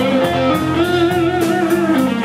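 A live band plays: guitars, bass and drum kit. A lead line wavers and bends in pitch over cymbal strokes about four times a second.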